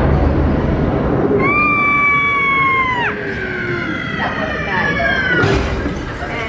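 Haunted Mansion stretching-room scare effect through the ride's speakers: a low rumble of thunder, then a high scream held for about a second and a half that drops away sharply, trailing into a second falling cry, and a crash near the end.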